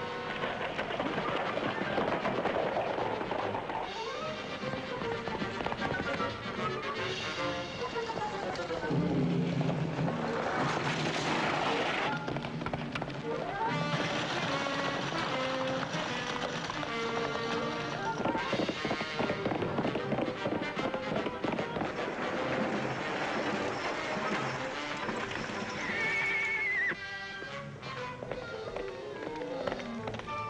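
Orchestral background music over the hoofbeats of galloping horses, with a horse whinnying.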